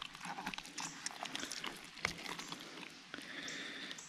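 Faint wet squishing and small irregular clicks of hands squeezing and pulling apart the slimy, gutted body of a northern snakehead to open its stomach.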